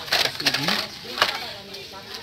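Plastic blister-card packs of toy cars clattering and knocking against each other as they are rummaged through by hand, with a few sharp clicks, the loudest a little past one second in.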